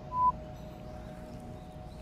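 A single short electronic beep, one pure steady tone, just after the start. It is the loudest sound, over a faint steady hum.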